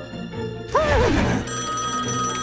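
A sudden loud burst of sound with sweeping pitches about three-quarters of a second in, then a desk telephone starts ringing with a steady high ring, over background music.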